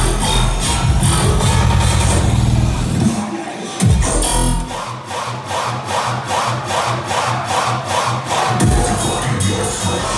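Loud live dubstep DJ set through a club sound system, recorded on a phone: heavy bass for about three seconds, a short break, then a rhythmic build without the low bass, before the bass comes back near the end.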